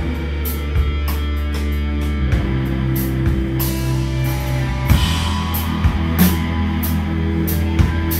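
Live rock band playing: electric guitars hold sustained chords over a drum kit, with repeated cymbal hits and kick drum.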